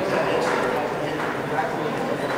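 Indistinct voices of onlookers calling out and talking during a wrestling bout, with some short, sharp shouts among them.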